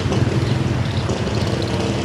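Small motorcycle engine running steadily as it passes by.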